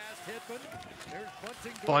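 Speech only: a man talking at a lower level than the surrounding commentary, over a faint hiss of background noise.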